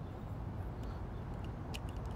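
Low steady background noise with a few faint, small clicks near the end: the film and spool being handled in a medium-format camera's film insert while it is loaded with 120 film.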